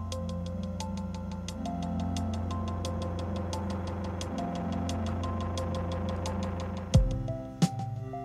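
Electronic music playing from a Synthstrom Deluge groovebox: a looped pattern of fast, even ticking over a sustained bass and short synth notes. About seven seconds in, a loud low hit comes and the pattern changes to a new section.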